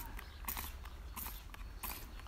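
Trigger spray bottle of de-icer squirting onto a frosted car window: a few short hissing squirts, roughly one every half second.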